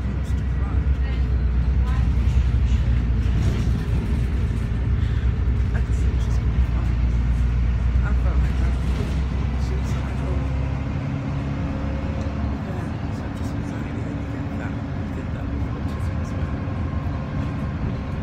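A bus engine's low rumble and road noise, heard from inside the passenger cabin; the deep drone eases off about eleven seconds in.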